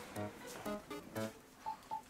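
Faint background music: a light melody of short, separate pitched notes about two a second, with two short high beeps near the end.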